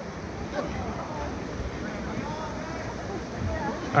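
Steady rush of river water around the rafts, with faint voices in the distance.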